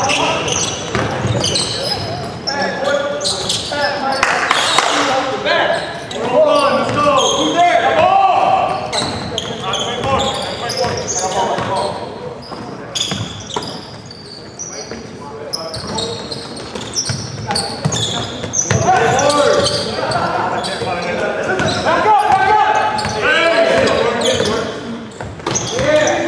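Basketball dribbled on a hardwood gym floor, with scattered players' shouts echoing in a large gymnasium.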